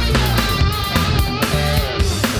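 Fusion jazz-rock instrumental led by electric guitar, with bass and a steady beat.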